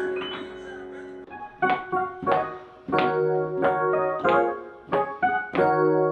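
Digital piano being played: a held chord dies away over the first second, then chords are struck in a steady rhythm, about three every two seconds, each left ringing.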